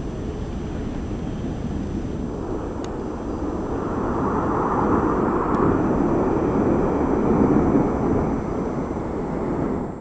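Jet noise from a formation of Saudi Hawks display-team BAE Hawk jets passing overhead. It is a steady rushing rumble that swells between about four and eight seconds in, then eases off.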